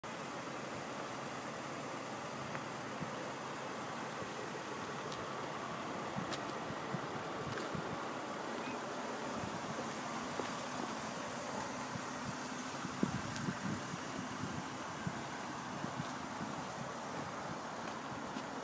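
Car engine idling with a steady low hum under outdoor air noise. A few light knocks come about two-thirds of the way through.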